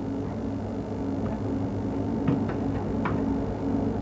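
Steady low electronic hum, with a couple of faint clicks in the second half.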